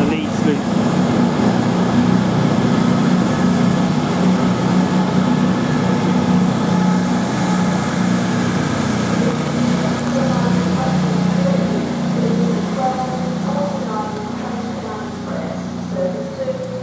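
Class 221 Super Voyager diesel-electric multiple unit pulling away, its underfloor diesel engines running with a steady low drone that fades slightly over the last few seconds.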